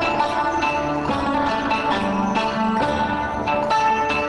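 Korg M3 workstation playing a combi patch: layered synthesizer music played live on its keyboard, with sustained chords under a run of repeated note attacks.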